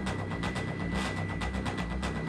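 Background music with a fast, even pulsing beat over moving bass notes, with a thin steady high tone underneath.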